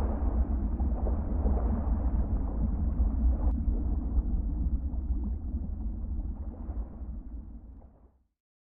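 A deep, steady rumble, mostly very low in pitch, that fades away over the last couple of seconds to nothing.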